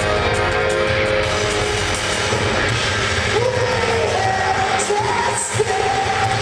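A live rock band playing, with electric guitars, keyboard and drums, heard loud from the audience in a large hall. A sung vocal line comes in about two seconds in and is held over the band.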